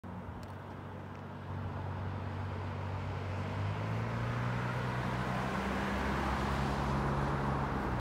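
Road traffic on a wet road, with the engine drone of an approaching Novabus LFS city bus slowly growing louder under the hiss of tyres.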